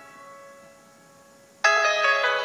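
Piano chord ringing out and fading away, then a new chord struck loudly about a second and a half in.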